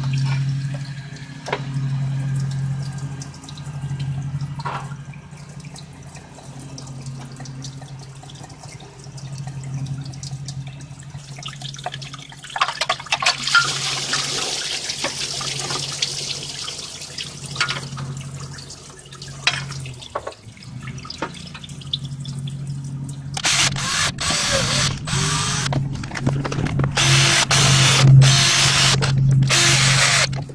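Cordless drill-driver running in a quick series of short, loud bursts over the last six seconds or so, at the water pump mounting of the Honda J35 V6. Before that there is a steady low hum with occasional tool clicks, and a few seconds of hiss in the middle.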